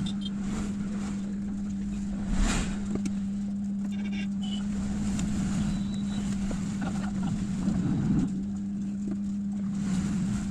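Handheld hot air gun running with a steady hum, heating the phone's back glass to soften its adhesive. There is a sharp knock about two and a half seconds in.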